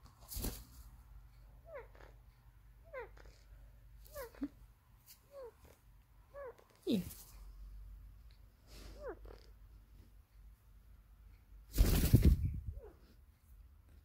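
A pet parakeet giving a string of short, soft calls that slide downward in pitch, about one a second, with one loud brief rustle near the end.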